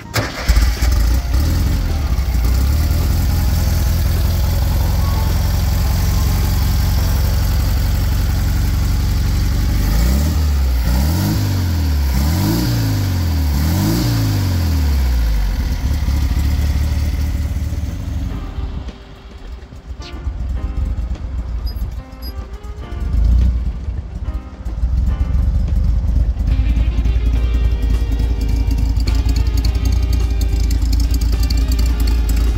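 1973 Volkswagen Super Beetle's air-cooled 1641 cc flat-four engine running, revved up and down about four times in quick succession around a third of the way in. It drops quieter about two-thirds through, then runs steadily again near the end.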